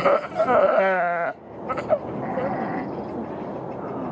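Ewe in difficult labour bleating loudly, one wavering cry about a second long, then a brief sharp knock near two seconds in.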